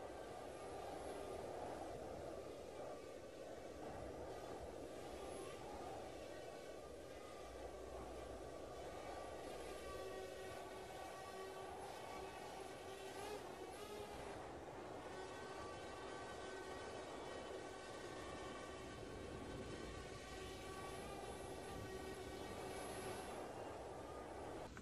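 A faint, steady hum made of several sustained tones, wavering slightly in pitch a little past the middle.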